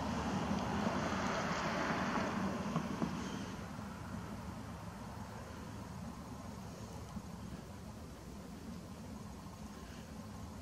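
Distant vehicle noise, a hiss-like rush that is louder over the first three seconds or so and then eases off.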